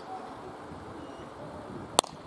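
Cricket bat striking a leather cricket ball once, a single sharp crack near the end, over steady outdoor background noise.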